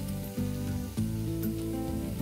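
Chopped vegetables sizzling in oil in a frying pan, under background music of sustained notes that change about a second in.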